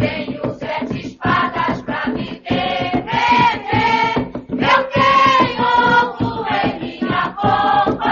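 An Umbanda ponto (sacred chant) sung by a choir over a steady rhythmic beat.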